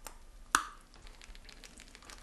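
A single sharp click about half a second in, followed by faint small crackles in a quiet room.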